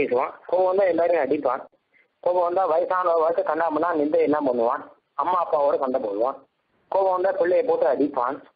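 Speech only: a man giving a Tamil religious discourse in phrases broken by short pauses, on a narrow-band recording.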